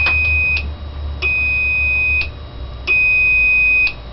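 Electronic beeper of a Back to the Future replica plutonium indicator sounding its empty warning: a high steady beep about a second long, repeated three times with short gaps, over a low steady hum.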